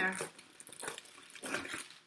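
Scissors making a few short snips through a cellophane sheet, the plastic crinkling as it is cut and handled.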